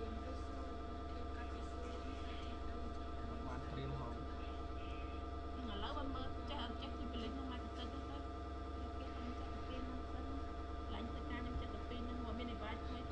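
A steady hum made of many steady tones, strongest in the low range, with faint, indistinct voices over it.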